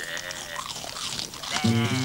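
Cartoon sheep bleating as a flock, a soundtrack effect, with music starting about one and a half seconds in.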